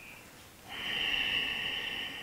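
A person's long, steady breath out, starting a little over half a second in and easing off just after the end: a yoga exhale held in the pose.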